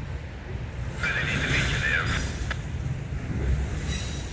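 Freight train of autorack cars rolling past with a steady low rumble. About a second in, a high wavering squeal from a wheel on the rail lasts about a second, followed by a single sharp click.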